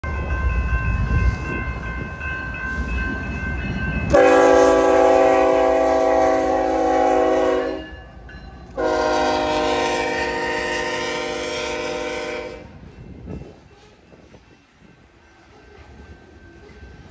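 BNSF locomotive air horn sounding two long blasts, each a chord of several notes held for about three and a half seconds, with a short gap between them. A low rumble of the train comes before the horn.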